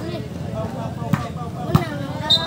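Sepak takraw ball being kicked in play: two sharp kicks, about a second in and again near the end.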